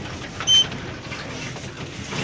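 A single short electronic beep about half a second in, a clean high tone, over a steady murmur of room noise.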